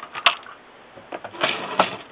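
Lee Pro 1000 progressive reloading press being cycled: metallic clicks and clunks from the moving ram and indexing shell plate, with a sharp click about a quarter second in and another near the end.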